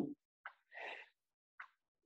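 A man's faint breath in, heard close on a headset or laptop microphone, with a short soft click before it and another after it.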